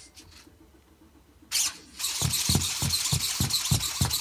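Mekamon robot spider's leg servos whirring as it lifts and waves its front legs. Quiet at first, a short burst about one and a half seconds in, then steady servo noise from two seconds in with a low pulse about three to four times a second.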